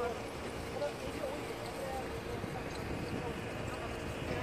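Steady drone of a boat's engine with wind noise, heard on board while the vessel is moving over the water.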